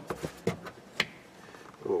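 A few sharp clicks and light knocks of a seat belt's metal latch hardware being handled and moved aside, the loudest about a second in.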